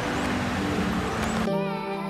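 Steady outdoor background noise with a faint low hum, cut about one and a half seconds in by instrumental music with long held notes.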